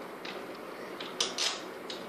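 Short scrapes and rattles of metal mounting hardware as the telescope tube is fitted onto its altazimuth mount and a mounting screw is handled. A couple of louder bursts come a little over a second in.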